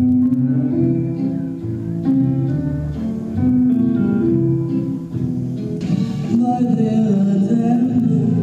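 Recorded music played back into the room, with held sung notes over a guitar-like accompaniment. It is a sample of pieces taped onto cassette.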